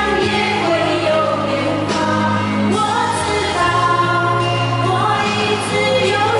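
Women singing a song into handheld microphones over instrumental accompaniment, amplified through a stage PA system.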